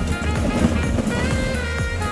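Background music with a melody over a steady bass line.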